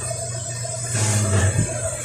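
Background music, with faint handling noise from the camera being moved.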